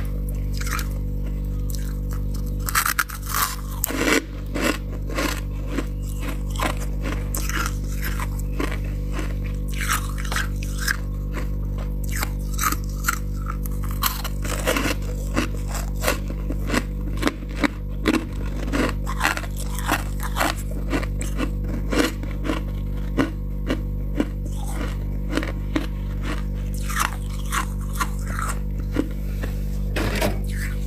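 Crunchy freezer frost being bitten and chewed: a string of crisp crunches, one or two a second, over a steady low hum.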